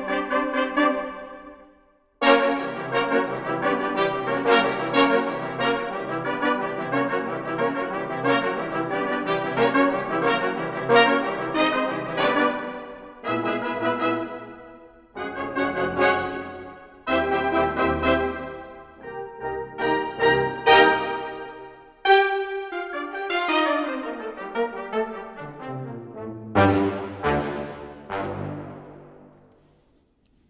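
Sampled brass ensemble from the Spitfire Audio Originals Epic Brass library, its short articulation played from a keyboard as staccato chord stabs, with the tightness control turned up for a percussive attack. A fast run of repeated stabs lasts about ten seconds, followed by spaced single hits and a falling line of short notes near the end.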